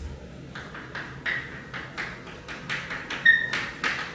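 Chalk writing on a chalkboard: a run of short taps and scratchy strokes, several a second, with a brief chalk squeak near the end.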